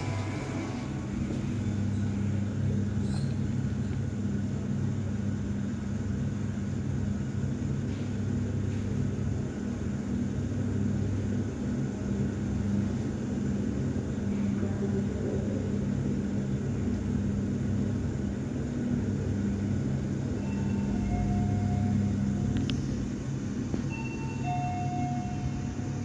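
TKE thyssenkrupp passenger lift car travelling upward, heard from inside the cab: a steady low hum and rumble of the ride. A few faint short tones come near the end.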